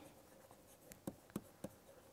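Faint taps and scratches of a stylus handwriting on a tablet screen, a few quick ticks clustered around the middle.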